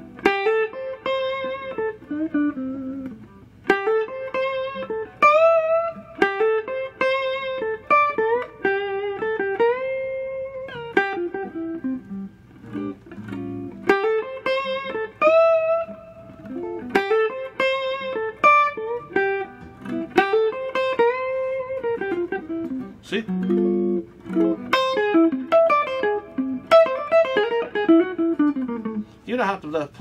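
1967 Gibson ES-335 semi-hollow electric guitar through a 1965 Fender Pro Reverb amp, played in single-note phrases with string bends and vibrato on held notes.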